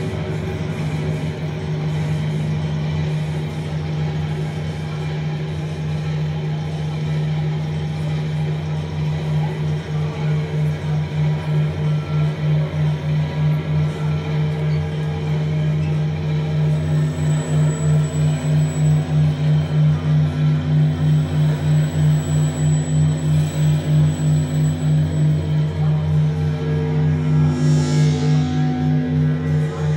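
Analog synthesizers playing a low electronic drone. Around ten seconds in it starts to pulse in a steady rhythm, and a higher held tone joins a few seconds later.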